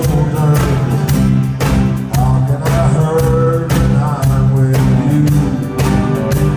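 Live acoustic band playing: strummed acoustic guitars, electric guitar and keyboard with a voice singing over them, on a steady beat of about two strokes a second.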